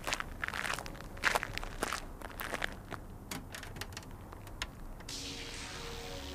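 Irregular footsteps and scuffs, sharp uneven knocks at varying spacing. About five seconds in, a steady hiss begins.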